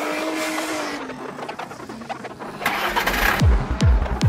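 Psytrance track intro carrying an engine-like sound effect, with a tone that rises and falls. Near the end a noise swell leads into the kick drum and rolling bass.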